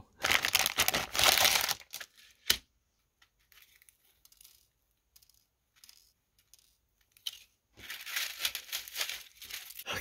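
Plastic packaging crinkling and rustling as it is handled, in two spells of about two seconds each, one at the start and one near the end, with a single sharp click between them.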